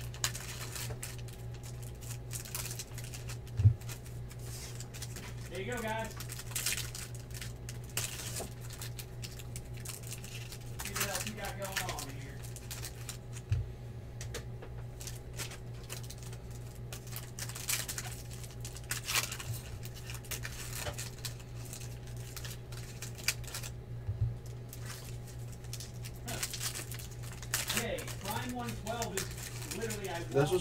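Foil trading-card pack wrappers being torn open and cards shuffled by hand: a string of short crinkles and rustles, with a sharp tap about four seconds in. A steady low hum runs underneath.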